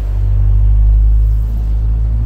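Road vehicle passing close by: a loud, deep engine rumble that swells to a peak about a second in and eases off slightly.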